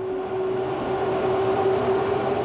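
Steady drone of an airliner's engines: a held hum under an even rushing noise.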